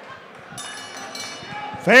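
Quiet arena background after the walk-out music has faded, then a man's voice over the public-address system starts up loudly near the end.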